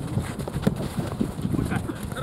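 Soccer players' running footsteps and ball touches on a hard dirt pitch, a rapid run of irregular thuds, with players' voices in the background.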